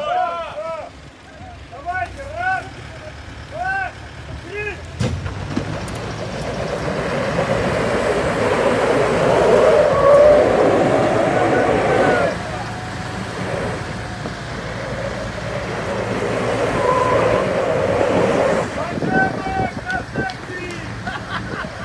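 Toyota Land Cruiser Prado and Mitsubishi Pajero engines revving hard under load as their tyres spin on loose dirt and gravel in a tow-strap tug-of-war. The noise builds from about five seconds in, is loudest around ten seconds, eases slightly near twelve seconds and carries on until just before the end.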